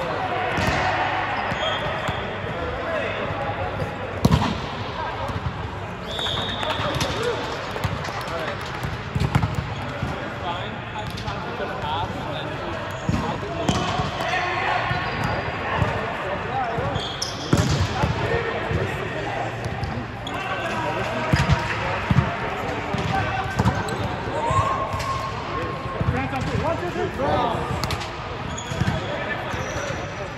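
Volleyballs being hit and bouncing on a hard indoor court floor, with scattered sharp smacks (a few louder ones), short high sneaker squeaks, and the indistinct chatter of many players.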